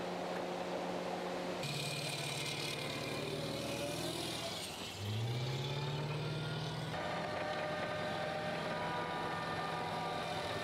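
Tracked amphibious armoured vehicle's engine running. The engine note shifts suddenly twice, at about two seconds and at about seven seconds, and about five seconds in the engine revs up with a rising pitch.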